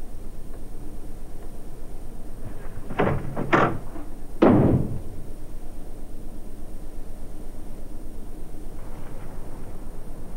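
A door being shut: two sharp clacks, then a louder, heavier bang from the door closing, between about three and five seconds in.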